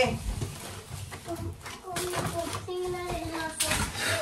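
A baby or toddler babbling and fussing in wavering, drawn-out sounds, with the rustle of a woven plastic shopping bag as groceries are taken out of it.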